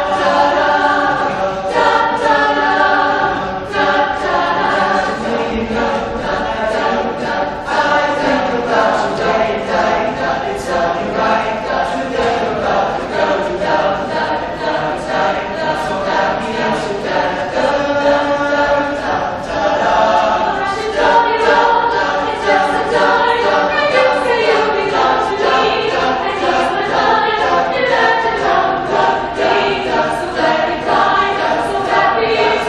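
A mixed choir of young voices singing a song in harmony, with a steady pulse under the voices.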